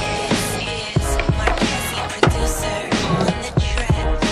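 Skateboard wheels rolling and the board clacking on asphalt, mixed under background music with a steady beat.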